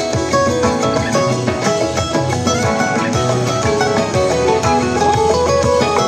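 A recorded band track playing, with guitar lines over bass and drums and a steady beat.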